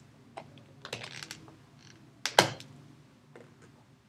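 Dry-erase marker writing on a whiteboard: a series of short taps and clicks as letters are put down, with one louder, sharper knock a little past the middle.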